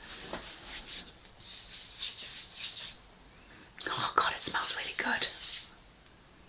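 Hands rubbing a thick body lotion into the skin of the hand and forearm: soft, repeated swishing strokes, fainter at first and louder from about two-thirds of the way in.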